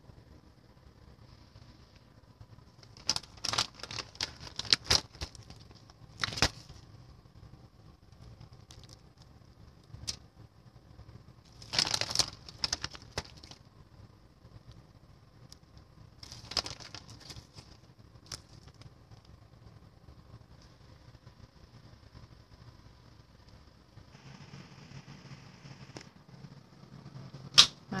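Scattered bursts of crinkling and clicking from aluminium foil and a metal baking tray being handled while cheese is laid on the vegetable slices, with a sharp louder click near the end.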